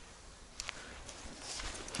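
Faint footsteps on gravelly ground, soft irregular steps with a light click about half a second in.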